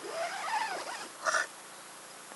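A Sony digital voice recorder being handled while a file is selected. A faint, high, wavering sound runs through the first second, then a short noisy burst comes a little past a second in.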